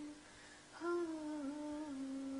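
A woman singing unaccompanied in a soft hum. A held note ends just after the start; after a short pause a new note begins, dips slightly and holds steady.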